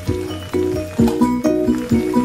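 Background music: short pitched notes repeating in a quick, steady rhythm.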